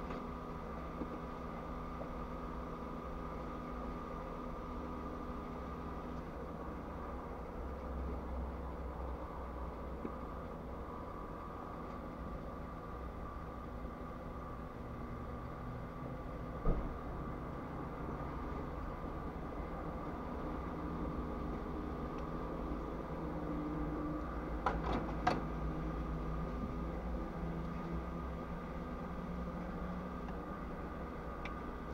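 Steady hum of a stationary car heard from inside its cabin, with a low rumble and a few fixed tones. A single sharp knock comes just past the middle, and a short cluster of clicks about five seconds before the end.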